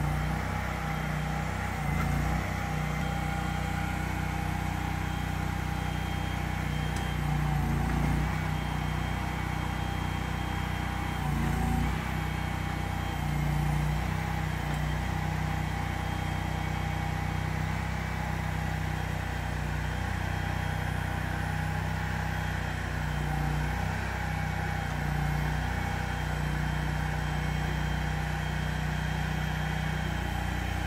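Flatbed delivery truck's engine running steadily, with a faint steady whine above the low engine note and small swells now and then.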